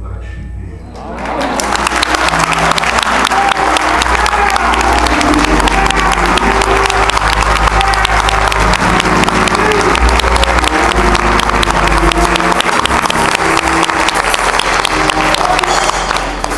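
A church congregation applauding. The clapping swells in about a second in and stays dense and loud, with music playing underneath.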